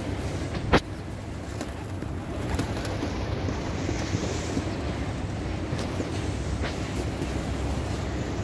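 A flock of feral pigeons feeding and flapping close by over a steady low street rumble, with one sharp click a little under a second in.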